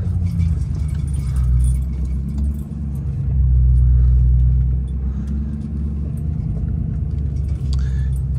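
Ford F-250 pickup's engine running, heard from inside the cab as the truck moves slowly with the trailer. It swells louder for a second or two about halfway through, then settles back.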